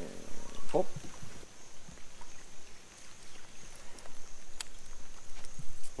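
A man's short startled cry of "oh!", then faint outdoor background noise with a few light clicks.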